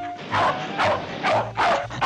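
Cartoon dog barking about four times in quick succession, roughly two barks a second, over background music.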